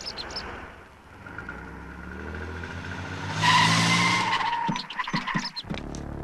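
A car engine revving with rising pitch, then a loud tyre squeal of a little over a second about halfway through as the car pulls away fast.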